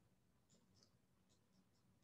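Near silence, with a few faint, short scratchy ticks of a stylus writing on a tablet screen.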